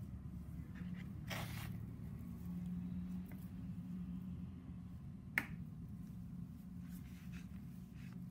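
Small surgical instruments and gauze handled by gloved hands during a scalp cyst excision: a brief rustle about a second and a half in, then one sharp click a little after five seconds. A steady low hum runs underneath.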